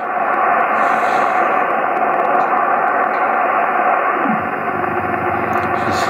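Shortwave band noise hissing steadily from an ICOM IC-718 HF receiver tuned in upper sideband near 7.65 MHz while its dial is turned. About four seconds in, a tone glides down in pitch as a radioteletype (RTTY) signal comes into tune.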